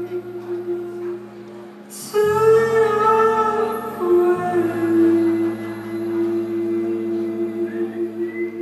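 Live band music: held chords over sustained bass notes, with a man's soft high singing coming in about two seconds in on long, drawn-out notes.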